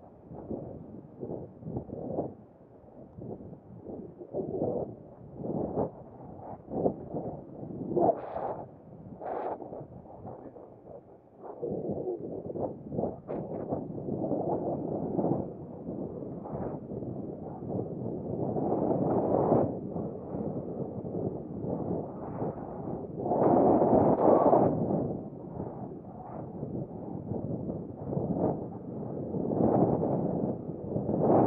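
Wind buffeting the camera's microphone as it moves, an irregular low rumbling whoosh that comes in gusts and swells loudest a little past two-thirds of the way through.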